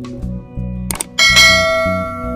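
Subscribe-button animation sound effect: sharp mouse clicks about a second in, then a loud bell ding that rings on and slowly fades. It plays over background guitar music.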